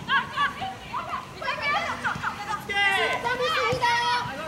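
Women soccer players shouting short calls to one another across the pitch during play, several high voices overlapping, busiest in the second half with one drawn-out call near the end.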